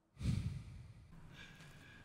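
A person's heavy sigh: one breath let out about a quarter second in, fading over about half a second.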